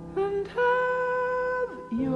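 Female jazz vocal with piano: a short sung note, then one long held note that falls away near the end, over sustained piano notes.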